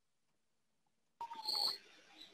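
About a second of dead silence, then faint room noise with a thin, slightly falling whistle-like tone as a computer microphone is unmuted on a video call.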